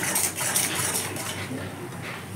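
Stainless steel spoon scraping and clinking against a metal pan while stirring a thick frying coconut-spice paste, a run of quick strokes that grow fainter toward the end.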